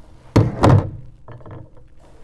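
Glass mason jars being handled and set down at a stainless steel sink. Two sharp knocks come about a third of a second apart, followed by a softer patter of small knocks.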